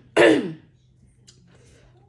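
A woman coughs once, loudly and briefly, just after the start.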